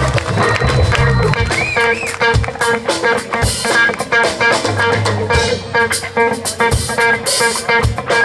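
Live blues band playing an instrumental break: a lead electric guitar solo, with a bent note about two seconds in and then quick runs of short notes, over bass and drums.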